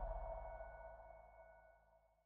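Tail of an outro logo sting: a deep bass boom with a ringing, sonar-like chord of high tones over it, fading away and gone about one and a half seconds in.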